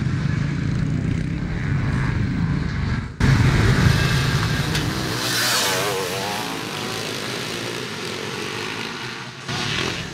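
Twin-shock motocross motorcycles: a low engine rumble, then about three seconds in a sudden louder pack of bikes accelerating hard, engines revving up and down in pitch before easing off.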